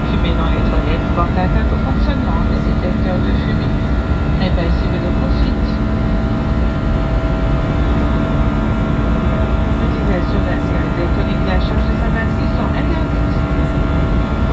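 Airbus A320 cabin noise during the climb after takeoff: a steady low rumble of engines and airflow with a few steady engine tones.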